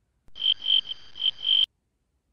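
A person whistling, or blowing breath out through pursed lips, on one steady high pitch that swells four times over a breathy hiss and cuts off abruptly.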